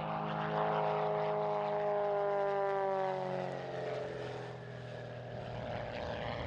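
Genevation GenPro single-seat aerobatic plane making a low pass, its engine and propeller droning. The pitch falls gradually as it goes by, and the sound then fades.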